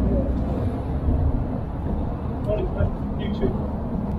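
A steady low rumble of a vehicle engine running, with faint voices talking now and then.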